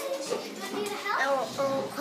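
A boy speaking.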